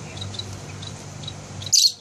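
Small cage birds in an aviary giving short, high chirps, over a low steady hum. Near the end comes one loud, brief high-pitched burst, and after it the background drops away abruptly.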